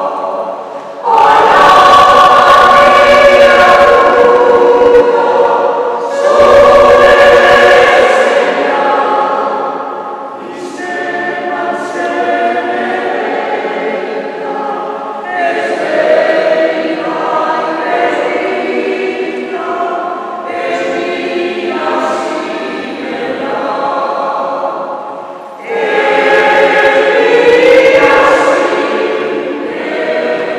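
Mixed choir of women's and men's voices singing in a church, swelling to loud passages about a second in and again near the end, with a softer stretch in the middle.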